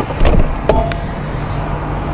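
A motorcoach's under-floor storage bay door being shut and latched: a few sharp metal clicks and knocks in the first second, with a brief high note, over a steady low rumble.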